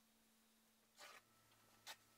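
Near silence, broken by two brief, faint scrapes: a wooden craft stick scraping the surface of a silicone mold, the first about a second in, the second shorter near the end.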